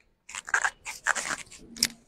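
Handling noise on the lectern microphone: about five short crackling, rustling scrapes as hands work at the microphone and lectern.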